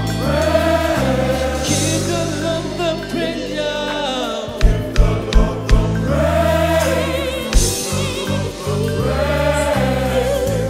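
Gospel choir singing with live band accompaniment and sustained bass notes underneath; about halfway through, four loud hits come in quick succession.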